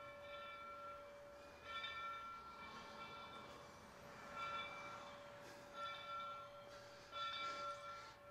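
Locomotive bell being rung by hand, faint, about six strokes roughly a second and a half apart, each ringing on briefly.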